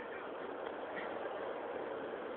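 Steady hiss of rain falling on the cloud-forest foliage.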